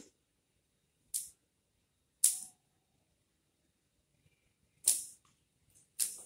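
Scissors snipping flower stems: three short, sharp cuts spread over a few seconds, the second and third the loudest.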